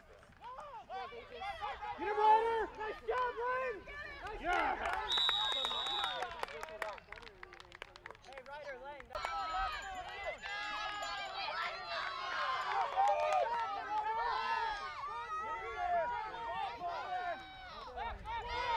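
Spectators and players shouting and cheering over one another during a youth football play, with a referee's whistle blown once for about a second, about five seconds in, ending the play.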